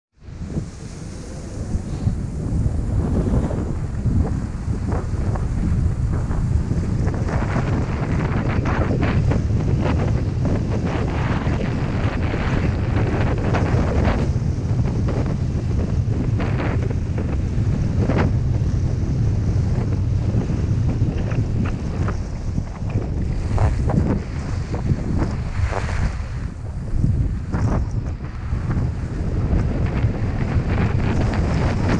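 Wind blasting on a GoPro's microphone while skiing down a groomed piste, a loud steady low rush. Over it, the skis' edges scrape and hiss on the packed, corduroy snow in irregular strokes as the skier turns.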